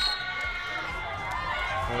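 Players and spectators cheering and shouting in an indoor volleyball arena just after a point is won, over steady background music.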